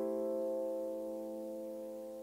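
Roland LX706 digital piano playing a layered piano-and-pad sound: one held chord slowly fading, with no new notes struck.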